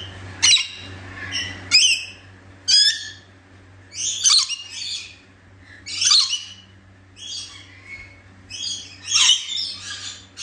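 Scaly-breasted lorikeets calling: a run of short, shrill screeches, about one a second, with a few calls doubled up near the end.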